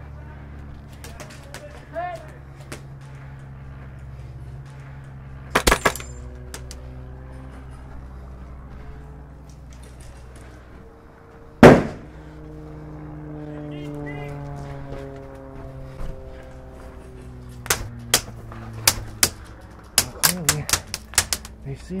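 Airsoft gunfire: a quick cluster of three or four sharp shots about six seconds in, one much louder crack near the middle, then a string of single shots, a fraction of a second apart, over the last few seconds.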